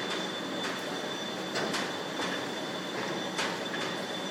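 Steady hum of factory machinery with a thin, constant high whine. Several short scuffs are heard over it, some close together, consistent with candy ropes being handled on the work table.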